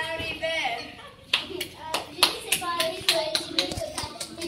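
Scattered hand claps from a few children: a run of about a dozen sharp, uneven claps starting a little over a second in, over children's voices.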